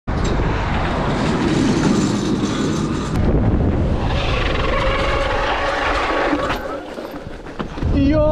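Wind buffeting the camera microphone and tyre noise on asphalt while riding an e-mountain bike, a steady rushing that eases a little near the end.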